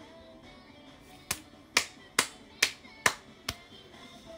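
Six sharp hand strikes, snaps or claps, in an even beat about two a second, the last one softer, over faint music.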